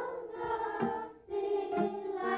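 A group of young children singing together in unison, holding notes in short phrases with brief breaks between them.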